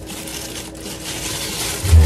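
Crinkly plastic being crumpled and handled, a rustling that swells through the middle, then a short low thump at the end.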